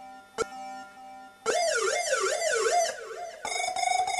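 Handmade circuit-bent electronic sound box played with fingertips on its touch contacts. A faint low steady tone and a sharp click about half a second in give way to a siren-like warbling tone that sweeps up and down about two or three times a second, then a steady, rapidly pulsing tone near the end.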